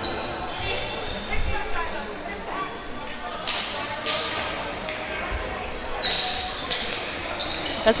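Indoor hockey play in a sports hall: several sharp clacks of sticks striking the ball, two about halfway through and two more a couple of seconds later, ringing in the hall, over faint players' voices.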